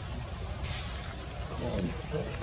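Faint voices over steady outdoor background noise: a low rumble and a steady high hiss, with a short burst of hiss a little over half a second in.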